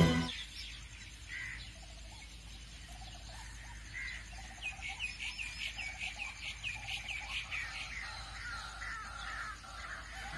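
Faint bird calls: two single calls in the first few seconds, then a quick run of repeated high chirps, several a second, from about four and a half seconds in.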